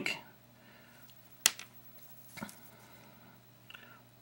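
Quiet room tone with handling noise at a fly-tying vise: one sharp click about a second and a half in, then a softer tap about a second later.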